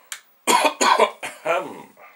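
A man coughing, a quick run of about four hard coughs.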